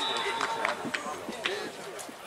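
Distant voices of players calling out across an outdoor football pitch, with a few short sharp knocks in between.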